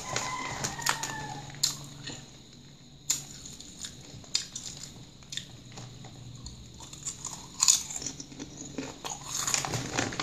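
Calbee Honey Butter potato chips crunched and chewed close to the microphone, with sharp single bites spread through the middle. The foil-lined chip bag crinkles at the start and again near the end as a hand reaches into it.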